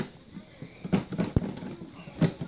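A few short plastic clicks and knocks as the lid of a plastic storage tote is opened and the things inside are handled, the sharpest knock about one and a half seconds in.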